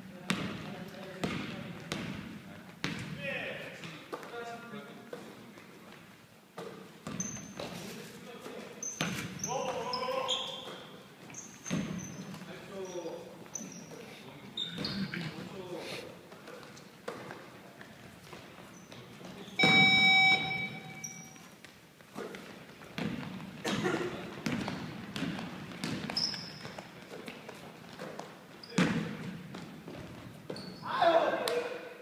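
Basketball game on a hardwood gym floor: a ball being dribbled and bounced, sneakers squeaking, and players calling out in a large echoing hall. About 20 s in, a loud buzzer sounds for under two seconds.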